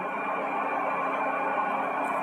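A steady ambient drone with no beat, a sustained background music bed holding level tones.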